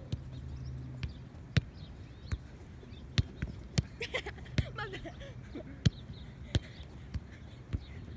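A soccer ball being juggled in the air between players, kicked and headed back and forth: about a dozen short, dull thumps of foot and head on the ball, roughly every half second to a second. Brief laughter about halfway through.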